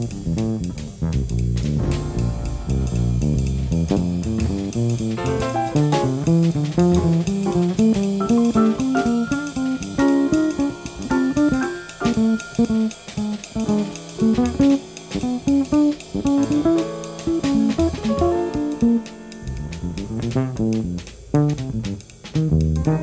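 Small-group jazz: a plucked bass carries a busy run of melodic lines, with a drum kit keeping time behind it.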